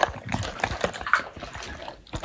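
Wet squelching and sticky clicks of a hand squeezing and turning seasoned chicken pieces in a metal bowl, with a sharp click at the very start.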